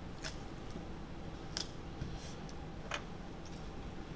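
A few short, sharp clicks and light paper handling noises as hands move a sheet of paper and pick up a mechanical pencil, over a steady low room hum.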